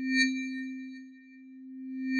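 Electronic section-break sound effect: a steady low tone with faint bell-like high overtones, swelling up just after the start, dying down through the middle and swelling again near the end.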